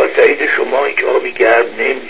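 Speech only: a person talking, stopping near the end.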